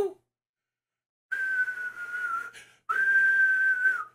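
A man whistling two long, steady notes at about the same pitch, with a short break between them and a breathy hiss around the tone, starting about a second in.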